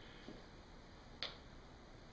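Near silence: quiet room tone, with one short faint click a little over a second in.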